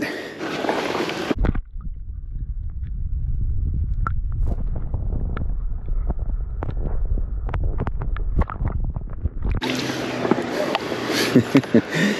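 Camera microphone submerged while a hand holds a crappie in the water: a muffled low rumble of water against the housing with scattered small clicks and knocks, lasting about eight seconds. Near the end the sound opens back up as the camera comes out of the water.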